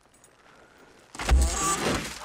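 About a second of quiet, then a sudden heavy thud as a man falls face-first into a wooden cart of manure, with voices crying out over it.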